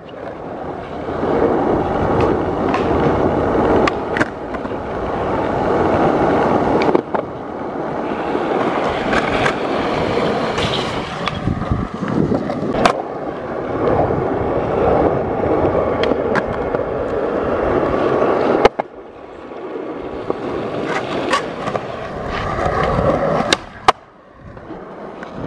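Skateboard wheels rolling over a paved skatepark surface: a continuous rumble that swells and fades with speed. Sharp knocks of the board come every few seconds, and the rolling drops out briefly after one about two-thirds of the way through.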